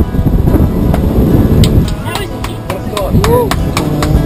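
Wind and rushing water as a large sailing yacht sails hard under way, with wind buffeting the microphone and a loud low rumble throughout. A few sharp clicks come in the middle, and a short voice cries out near the end.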